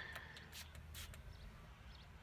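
Pump spray of a Bath & Body Works Endless Weekend body mist, misting onto a wrist: a few short, faint hisses, the clearest about half a second and a second in.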